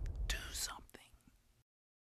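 A whispered voice: the tail of a hissed "psst", then "do something!" whispered, cutting off suddenly about a second and a half in.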